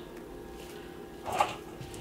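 Rehydrated soy curls dropped by a gloved hand into a ceramic baking dish of marinade: one short, soft squish about one and a half seconds in, otherwise a quiet room.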